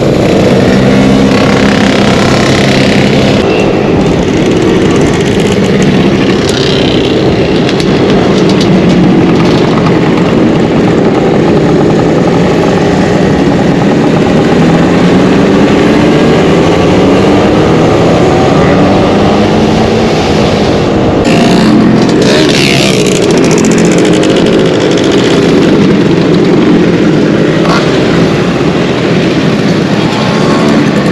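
Two-stroke scooter engines running under way in a convoy, the nearest engine droning steadily with its pitch slowly rising and falling as the throttle changes, over a constant rush of wind and road noise.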